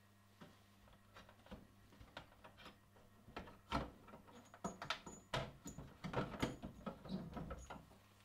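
Faint clicks, knocks and rustling as a metal flue-gas probe and its rubber hose are unclipped and lifted out of a plastic instrument case lid. The handling noises are sparse at first and grow busier from about three seconds in.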